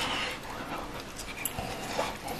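Close-up eating sounds: biting into a grilled gluten skewer and chewing, with wet mouth clicks and breathing.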